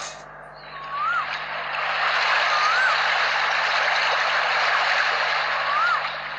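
Outdoor ambience: a steady rushing noise that swells up about a second in, with a short whistled call that rises then drops, heard three times.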